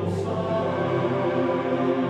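A choir chanting in the style of Gregorian chant, holding long sustained notes over a steady low drone, with a soft sibilant consonant just after the start.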